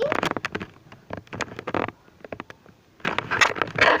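Camera handling noise: a run of knocks and rubbing against the microphone as it is moved, a short lull about two seconds in, then louder rubbing near the end.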